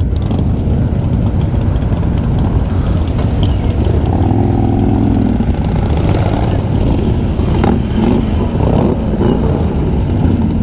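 A column of Harley-Davidson motorcycles riding past one after another, their V-twin engines running in a steady low drone, with one bike's engine note standing out clearly as it passes close, about four seconds in.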